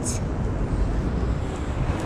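Steady low rumble of outdoor city background noise, with a brief hiss right at the start.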